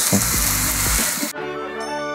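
Thin potato slices sizzling as they deep-fry in hot oil, cut off abruptly a little over a second in. Music with long held notes takes over.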